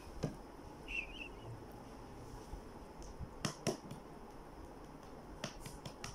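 A few sharp, isolated clicks in a quiet room: one just after the start, two close together about three and a half seconds in, and two more near the end, with a brief faint squeak about a second in.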